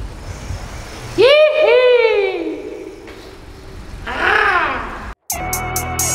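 A person's loud wordless yells, each rising and then falling in pitch, echoing off the walls of a concrete tunnel; the loudest comes about a second in and a weaker one follows about four seconds in. Near the end the sound cuts out for a moment and a hip hop beat starts.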